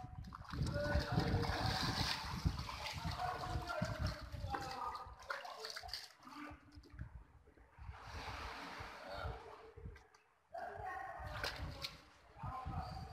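Shallow muddy water splashing and sloshing as the water is waded through and a caught swamp eel is handled, with a few brief wordless voice sounds.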